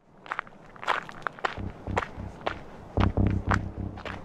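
Footsteps: a person walking with irregular steps, heavier low thumps joining from about halfway in.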